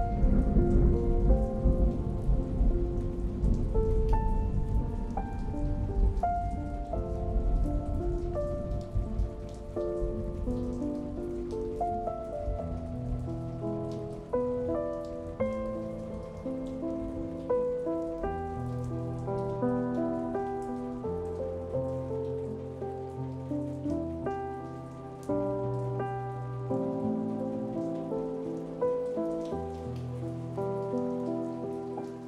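Slow, gentle solo piano music over a steady rain recording, with a deep rumble under it in roughly the first ten seconds.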